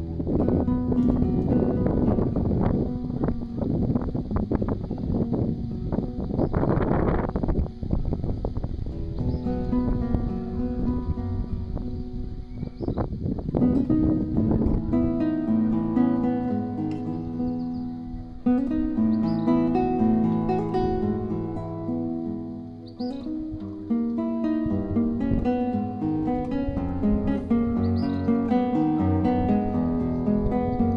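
Acoustic guitar music playing separate notes, clearest from about halfway through. In the first half a rough, rumbling noise lies over it.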